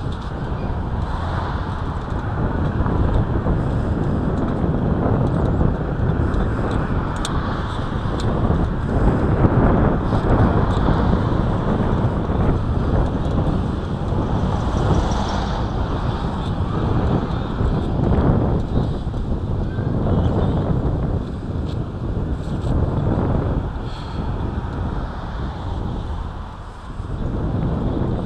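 Steady, loud wind buffeting on the microphone, mixed with street traffic noise from passing and idling cars, while the camera keeps moving along the sidewalk.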